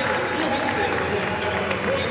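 Arena crowd noise: many voices talking and calling out at once, with some applause mixed in.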